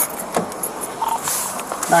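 A few light clicks and rattles, like keys and gear being handled, with a short beep about a second in.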